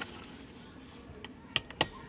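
Metal fittings of a four-point racing harness clicking together twice, sharply and about a quarter second apart, near the end, as the straps are pulled into place for buckling in.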